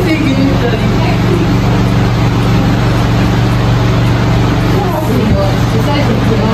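Steady, loud low machine hum, an unchanging drone like a running motor, with faint voices over it.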